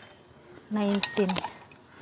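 Stainless steel measuring cup clinking briefly against metal as it is handled, about halfway through.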